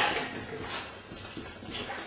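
Felt-tip marker writing on paper taped to a wall: a run of short, scratchy strokes. A louder rush of noise fades out at the very start.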